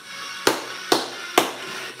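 Three knocks on a tabletop, evenly spaced about half a second apart, like hands tapping out a beat. Faint background music runs underneath.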